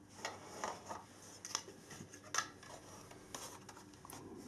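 Faint handling noise from a plastic battery charger being turned over in the hands: a few irregular small clicks and rubs of the plastic casing.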